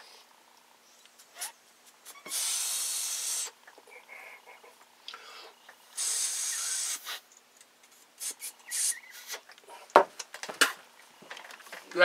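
Mouth-testing a carburetor's float needle valve and seat: two long hissing breaths of about a second each, a few seconds apart, as air is drawn through the seat to check whether the needle shuts it off. The needle seals. A few sharp clicks near the end.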